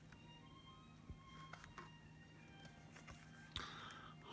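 Near silence: quiet room tone with a few faint tones and soft clicks, then a sharper tap about three and a half seconds in as a board-book page is turned.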